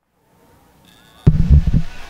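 A moment of silence, then faint outdoor ambience, then about a second in a brief cluster of loud low thumps and rumbling.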